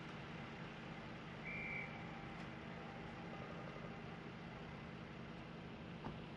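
Faint, steady low hum with a short high-pitched tone about one and a half seconds in.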